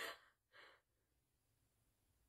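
Near silence, with a faint, brief intake of breath about half a second in.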